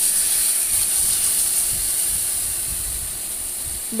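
Water poured into a hot aluminium kadai of fried potatoes, hissing and sizzling as it hits the hot oil and pan. The hiss starts abruptly and slowly dies down as the water settles.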